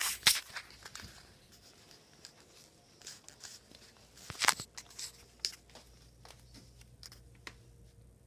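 Scattered clicks, knocks and short rustles of small objects being handled and moved about, the loudest clatter about four and a half seconds in.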